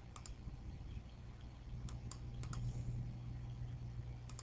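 Computer mouse clicking: a few short, sharp clicks, mostly in pairs, with one pair near the start and several more around two seconds in, over a steady low hum.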